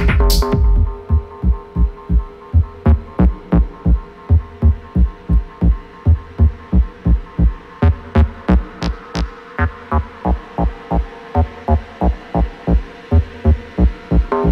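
Techno music in a breakdown: the full beat and hi-hats drop out about half a second in, leaving a low kick pulse about twice a second under a held synth tone.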